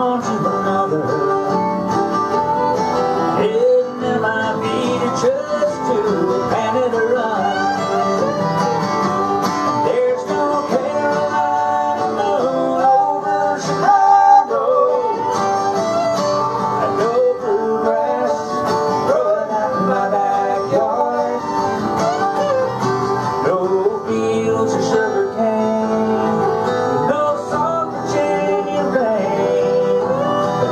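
Fiddle and acoustic guitar playing an instrumental break of a country song, the fiddle's melody sliding and bending between notes.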